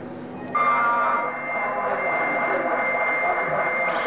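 Live rock band's amplified instruments: a loud, steady droning chord comes in suddenly about half a second in and is held without a break.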